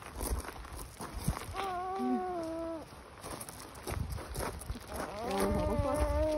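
Alpaca humming: a short steady hum about a second and a half in, and a longer one starting near the end, with footsteps scuffing between them.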